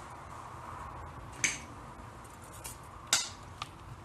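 Handling noise from a phone camera rig being moved: two sharp clicks about a second and a half apart, and a fainter one just after, over a steady room hum.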